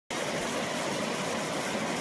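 A creek running high, rushing and splashing over rocks as a steady, even roar of white water.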